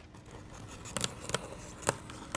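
Pocket knife blade slitting the packing tape along the top of a cardboard box: a rasping cut with three sharp strokes from about a second in, the last and loudest near the end.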